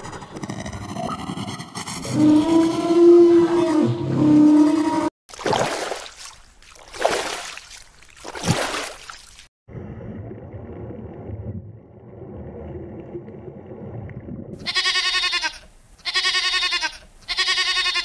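A dinosaur-roar sound effect, several pitched layers gliding and holding a tone for about five seconds, then three loud, swelling roar-like blasts. A quieter, low steady rumble follows, and near the end a goat bleats three times.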